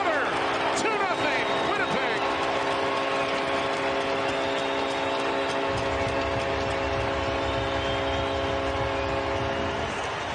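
Arena goal horn sounding one long steady chord over a cheering crowd, the signal of a home-team goal; the horn stops near the end. A low rumble joins about halfway through.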